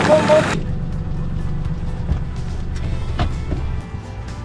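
A truck's engine running with a low, muffled rumble under background music, after a brief voice at the start; the sound turns suddenly dull about half a second in.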